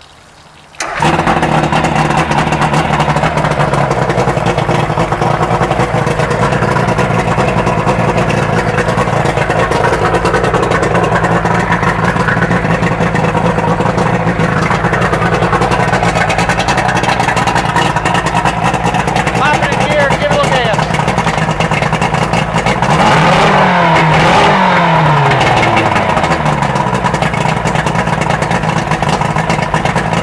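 Outboard motor starting abruptly about a second in and running steadily out of the water on a hose water supply, its first run after long storage and repairs. It is revved up for a few seconds a little after twenty seconds in, then settles back.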